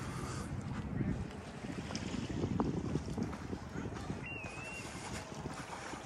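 Wind rumbling on the microphone, with a single brief wavering whistled bird call a little after four seconds in.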